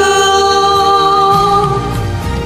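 Women singing a karaoke duet over a recorded backing track, holding one long steady note that ends near the close.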